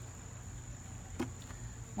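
Insects trilling as one steady high-pitched tone, over a low background rumble, with a single faint click just past a second in.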